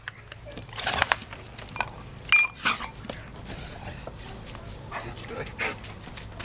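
A dog mouthing and dropping a stick: scattered short knocks and rustles, with a brief high tone about two and a half seconds in.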